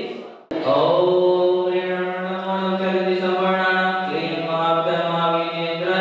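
Devotional aarti hymn sung as a slow chant, with long held notes. The sound cuts out briefly just before half a second in, then the chant resumes.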